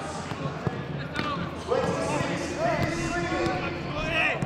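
Footballs being kicked back and forth on grass in a warm-up passing drill: several sharp thuds, closer together in the first two seconds.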